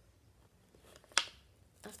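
A single sharp click of plastic packaging about a second in, as a blister pack of paint tubes is pulled open. Otherwise quiet handling.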